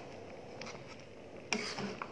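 Metal spoon stirring thick, simmering soursop jam in a pan: soft scraping and squelching over a low steady hiss, with a brief louder rasp about one and a half seconds in.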